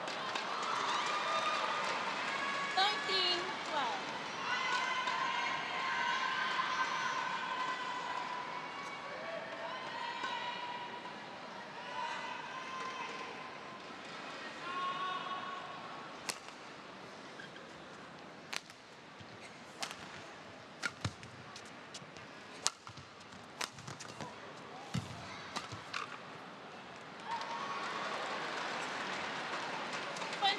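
Arena crowd shouting and cheering, then quieter while a run of sharp racket-on-shuttlecock strikes comes about one to two seconds apart in a badminton rally. The crowd swells again near the end.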